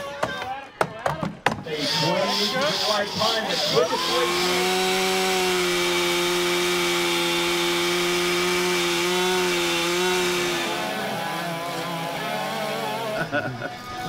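A few sharp axe strikes into wood, then a Stihl chainsaw running at full throttle and cutting through a log for about six seconds at a steady pitch, fading away a few seconds before the end.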